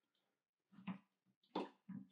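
Near silence: quiet room tone with a few faint, brief sounds, one about a second in and two more near the end.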